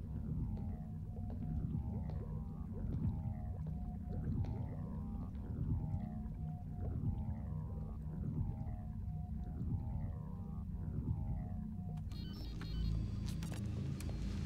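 Dark film underscore: a low rumbling drone under a repeating figure of falling, whale-like swoops and held tones. Near the end, electronic computer-console blips and chirps come in.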